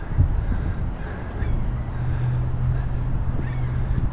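A few faint bird calls overhead, over a low outdoor rumble; a steady low hum comes in about a second in.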